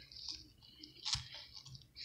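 Jackfruit bulb being pulled by hand from the stringy fibres around it: faint, moist tearing and rustling, with one sharper snap about a second in.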